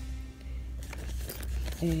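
Small cardboard cosmetic boxes rustling and clicking as they are handled and pulled from a fabric zippered pouch, a few light clicks over a steady low hum.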